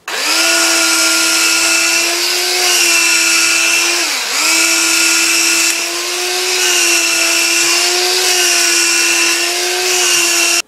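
Electric hand blender mashing boiled potatoes in a pot, its motor running with a steady whine. The pitch dips briefly about four seconds in, then recovers.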